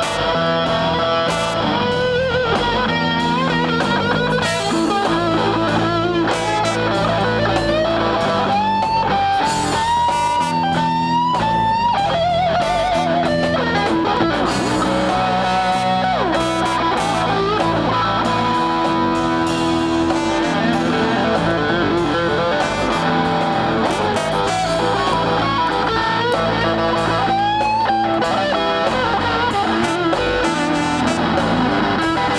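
Live electric blues band: a lead solo on a hollow-body electric guitar, with bent notes and vibrato, over a bass guitar line.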